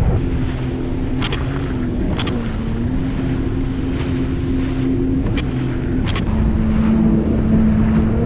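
Sea-Doo personal watercraft running at speed through choppy water, its engine note steady but dropping in pitch a little about two seconds in and again about six seconds in. Brief splashes come now and then as the hull hits the waves, with wind buffeting the microphone.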